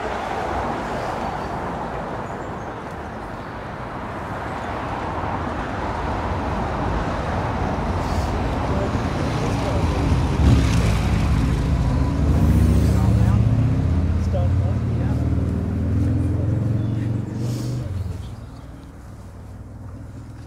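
Road traffic from a nearby road: a steady wash of passing cars, then a louder vehicle with a low engine note that builds from about halfway, peaks and fades away near the end.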